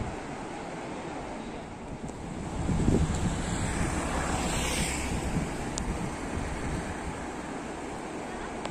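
Wind buffeting the microphone outdoors, a low rumbling that swells about three seconds in, with a rushing hiss that rises and fades around the middle.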